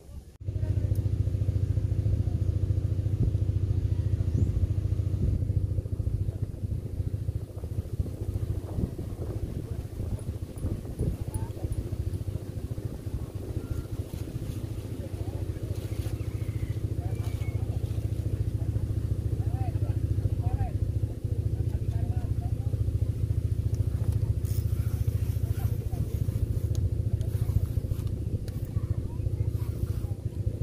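A steady low engine drone, with faint voices in the background.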